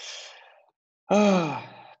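A man breathes in audibly, then lets out a drawn-out voiced sigh that slides down in pitch and fades.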